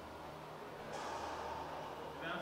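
A soft breath, faint and hissy, starting about a second in and lasting about a second.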